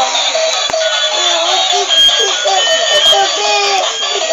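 Battery-operated toy school bus playing its built-in electronic song: a continuous melody with a synthesized singing voice.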